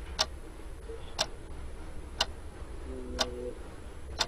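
Countdown timer tick sound effect clicking once a second, four ticks in all, as a quiz answer timer runs down.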